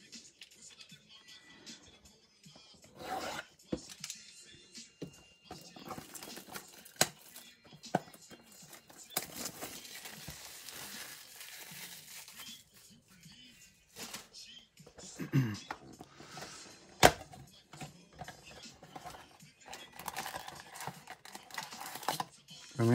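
Hands unwrapping and opening a Donruss Optic football card blaster box: plastic wrap crinkling and tearing, with a denser stretch of rustling in the middle and a sharp click about three quarters of the way in. Near the end come the rustle of the cardboard box and foil card packs being handled.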